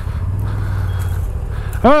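CF Moto 1000 ATV engine running steadily at low revs, a little louder in the middle, while the quad sits stuck in a ditch. Near the end a man gives a loud shout that falls in pitch.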